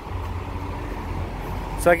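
Low, steady rumble of vehicle engine noise, with a man starting to speak near the end.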